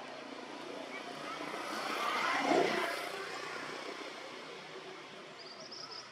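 A passing engine, swelling and then fading, loudest about two and a half seconds in.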